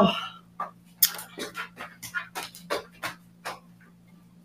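A person panting, with quick heavy breaths about three a second that stop shortly before the end, over a faint steady electrical hum.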